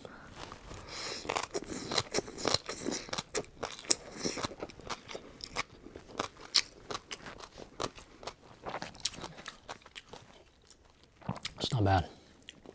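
Close-up chewing of crunchy papaya salad, with irregular crisp crunches a few times a second that thin out near the end.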